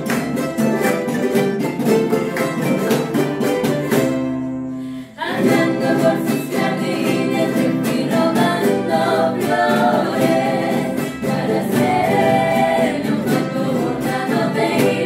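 Charango strummed in a fast, even rhythm, then a held chord left to ring and fade for about a second. Women's voices then come in singing a folk song over the strummed charangos.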